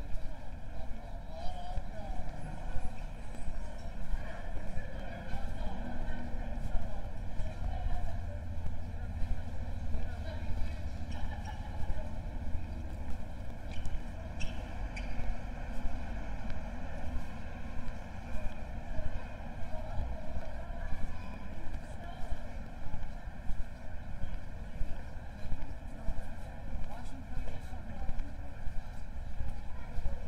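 Outdoor town-centre street ambience recorded while walking: a steady low rumble with faint voices of passers-by and occasional small clicks.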